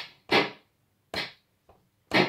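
Breadboard prototype of the SynClap analogue handclap generator sounding electronic handclaps: two short, noisy claps, each with a brief fading tail, about a third of a second and just over a second in, and a faint third one near the end.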